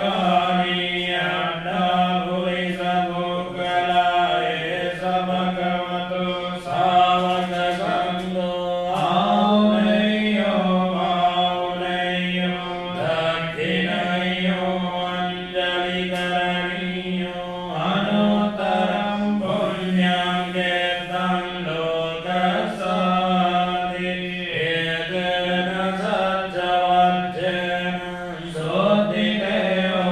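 Melodic Buddhist mantra chanting by voice over a steady low drone, in phrases that rise and fall every few seconds.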